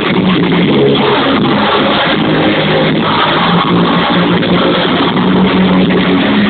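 Live punk/Oi band playing loud rock: distorted electric guitar, bass guitar and drums going steadily together.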